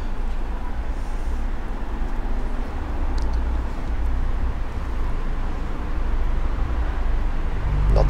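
Steady city street traffic noise, a low rumble with an even hiss over it.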